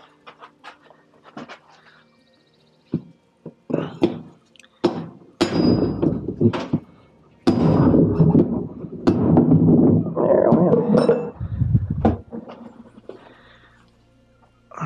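Hammer blows on a steel punch driving a stuck bearing out of a Whirlpool Cabrio washer tub's bearing hub. The sharp metal strikes start out spaced apart and become heavy and rapid from about halfway through.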